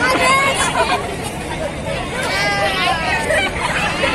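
A group of young women talking, laughing and calling out over one another in excited, overlapping chatter.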